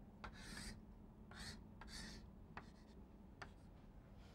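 Chalk drawing lines on a blackboard: several faint, short scratchy strokes, each beginning with a light tap of the chalk.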